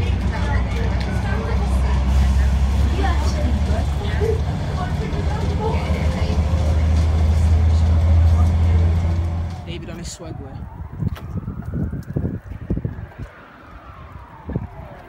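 Bus engine and road rumble heard from inside the bus, a steady low drone that stops about nine and a half seconds in. After it a siren wails slowly up and down.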